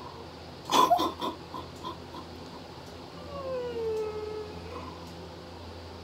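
A woman's wordless vocal reaction: a sharp squeal about a second in, trailing into a fading run of short laugh-like bursts, then a drawn-out whimpering hum that falls in pitch and levels off.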